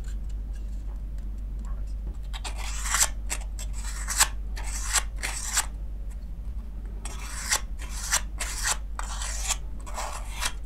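Sandpaper rasping against the edge of a thin lens-adapter ring in quick back-and-forth strokes, about two to three a second. A first run starts about two seconds in and a second follows a short pause just past the middle.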